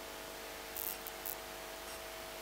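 Faint steady hiss with a low hum, the noise floor of a microphone and sound system between spoken lines, with two brief soft hissy puffs about a second in.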